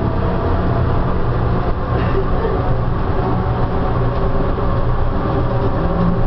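SFO AirTrain, an automated rubber-tyred people mover, running along its elevated guideway, heard from inside the car: a steady low hum and running noise.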